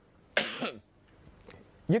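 A man coughs once, a short cough about a third of a second in, followed by a pause.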